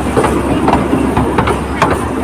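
Open-carriage zoo toy train running, with a steady low rumble and sharp clacks from the carriages every half second or so.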